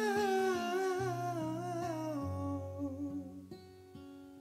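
A man's voice holding a long wordless note with a wavering vibrato over slowly picked steel-string acoustic guitar. The voice fades out a little past halfway, leaving quieter single guitar notes.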